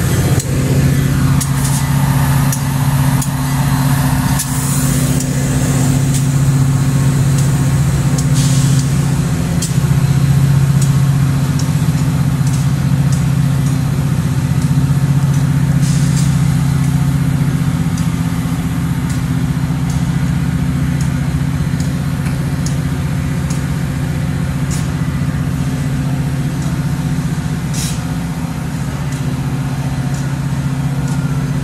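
Metra commuter train standing at the platform with its diesel locomotive idling: a steady low hum that holds throughout, with a few faint knocks on top.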